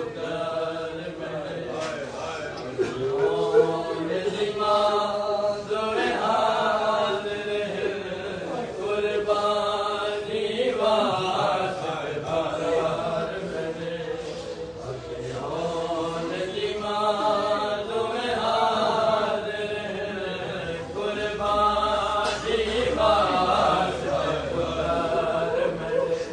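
Men's voices chanting a noha, a Shia mourning lament, unaccompanied, in repeating sung phrases.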